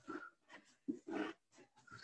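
A woman breathing hard in quick, faint puffs, about four breaths, out of breath near the end of a set of jumping split lunges.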